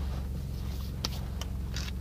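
Steady low hum of a car idling, heard from inside the cabin, with a few short clicks and rustles over it in the second half.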